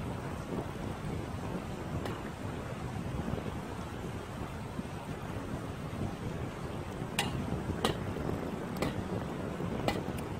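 Steady rush of river water over shallow rapids, mixed with wind on the microphone. A few sharp clicks come through, mostly in the last three seconds.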